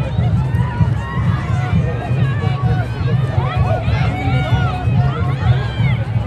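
Soccer stadium crowd: many spectators' voices chattering and calling out at once, with a few louder rising-and-falling shouts in the second half, over a steady low rumble.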